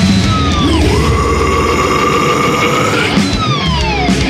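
Progressive death metal recording: distorted guitars, bass and drums playing loud and dense. A high held note slides down in pitch about half a second in, holds, then slides down again in the last second.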